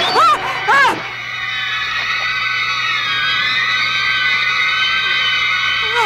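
A woman gives two short, pitched cries in the first second. Then a held, high chord of film-score music sounds, its pitch wavering slightly midway.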